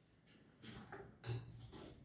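A few faint knocks and clinks of kitchen dishware being handled, the loudest a little past the middle.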